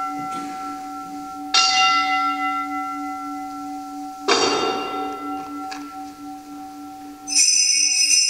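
Altar bell struck twice, each stroke ringing on with a slow fade over an earlier stroke's ring, marking the elevation of the consecrated host. Near the end a set of small hand bells is shaken in a bright jingle.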